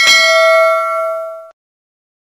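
A single bell-like ding sound effect, as used for an on-screen notification-bell button: one strike that rings with several tones, fading slowly, then cuts off abruptly about a second and a half in.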